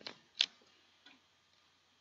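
A few sharp, separate computer keyboard keystroke clicks: one at the start, a louder one about half a second in and a faint one about a second in.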